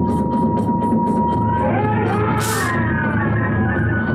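Kagura hayashi accompaniment: hand cymbals clashing in a fast, even rhythm over taiko drumming, while a bamboo flute holds one high note and then breaks into a bending melody about two seconds in. A short burst of hiss cuts through near the middle.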